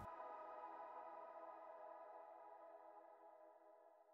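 The last held chord of soft synthesizer background music, dying away to silence over about three seconds.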